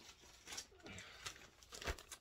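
Plastic poly mailer bag crinkling as it is picked up and handled, with a few short, faint crackles.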